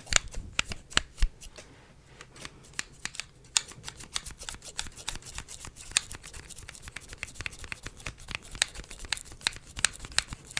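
Scissors snipping close to the microphone for a mimed haircut: crisp clicks, spaced out over the first few seconds, then a rapid run of several a second from about three and a half seconds in.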